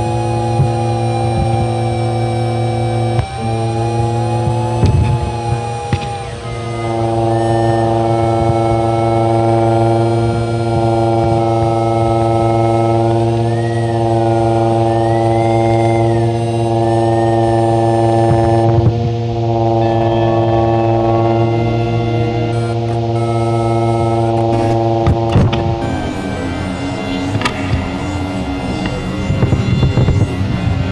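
Experimental musique concrète: a loud sustained drone of steady layered tones over a deep low hum, with a few higher tones gliding up and down in the middle. Near the end the drone breaks up into a choppier texture full of short clicks.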